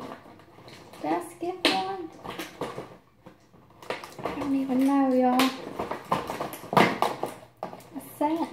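A woman's voice speaking in short stretches, one sound held at a steady pitch for about a second, with a few short clicks in between.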